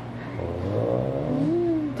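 A baby's drawn-out wordless vocalization: a gravelly low sound about half a second in, then a smoother tone that rises and falls in pitch.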